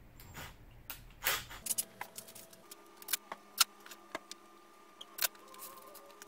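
Metal door hinges and a tool being handled on an OSB panel: a short scrape about a second in, then a string of sharp metallic clicks and clacks, the loudest about halfway.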